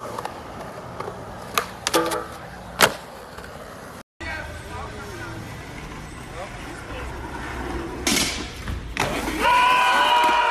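Skateboard tricks: sharp clacks of the board popping and striking a metal rail and concrete, three loud knocks within the first three seconds. After a short break, steady street noise, more board knocks about eight seconds in, then voices shouting near the end.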